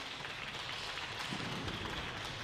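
Scattered audience applause in a large sports hall, a steady noisy patter without voices.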